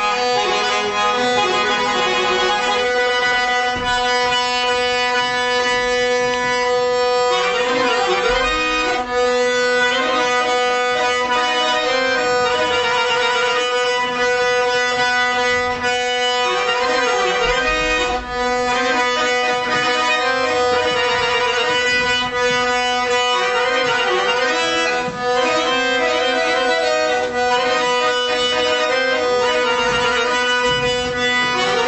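A small Azerbaijani traditional ensemble playing mugam, with a button accordion carrying the melody alongside string instruments. Steady held drone notes run under busier melodic runs.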